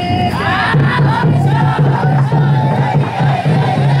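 Group of young men huddled arm in arm, shouting a chant together in a steady rhythm that sets in about a second in.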